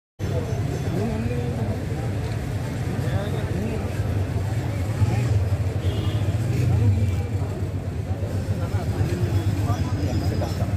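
Steady low rumble of road traffic, with people talking indistinctly in the background.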